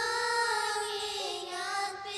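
A group of young girls singing a nasyid (Islamic devotional song) in unison into microphones, holding long drawn-out notes with a brief wavering ornament about halfway through.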